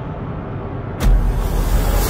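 Cinematic intro sound design: a low rumbling drone, then a sudden deep impact hit about a second in, followed by a heavy low boom under a wash of hissing noise.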